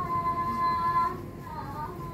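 A woman singing a Thai classical chui chai song to accompany the dance. She holds one long high note, then bends and wavers in pitch in a drawn-out ornament about a second and a half in.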